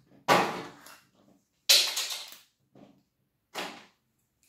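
Plastic packaging being handled and torn open in a few short, sudden rustling bursts, the loudest near the middle.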